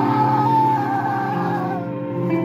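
Distorted electric guitar sustaining a chord in a live crust punk set, with a high wavering squeal on top that slides down and fades near the end.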